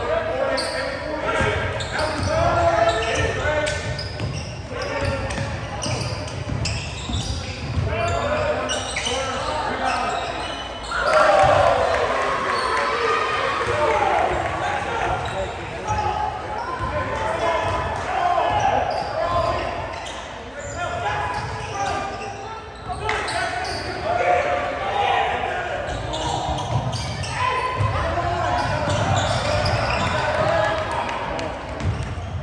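Basketball dribbled on a hardwood gym floor, with spectators' voices and shouts echoing in a large hall; the voices swell louder about eleven seconds in.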